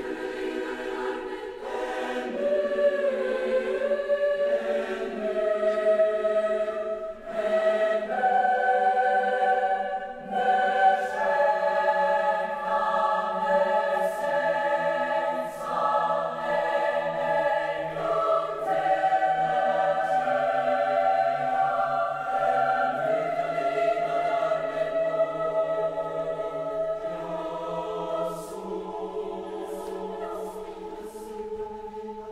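A large mixed choir of teenage voices singing slow, sustained chords in several parts, the notes held for seconds at a time.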